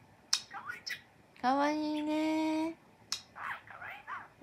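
Pet budgerigar vocalizing. A sharp click about a third of a second in and a few short chirps are followed by one long, flat-pitched, buzzy call held for over a second, like a talking budgie drawing out a mimicked vowel.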